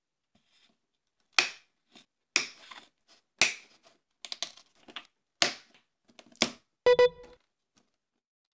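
A glued model-railway jetty being pried off its base with a flat blade: a series of sharp cracks and snaps, about one a second, with smaller clicks between them as the posts break loose. There is a short squeak near the end.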